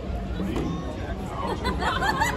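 Chatter of nearby people: several voices talking over one another, with no single clear speaker, growing busier near the end.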